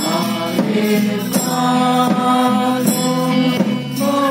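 Several voices singing a song together in long held notes over amplified backing music, with a low bass line and a steady beat about every 0.7 seconds.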